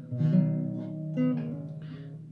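Nylon-string classical guitar strummed softly: one chord just after the start and another about a second in, each left to ring and fade.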